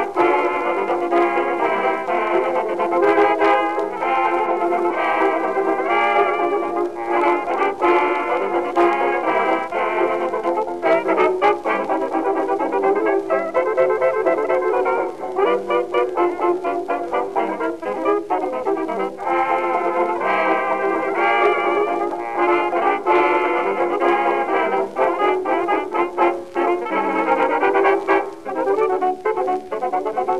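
A 1927 hot jazz dance band record: brass and reeds playing together over piano and banjo. The sound is dull, with no high treble, as on an old 78 rpm record.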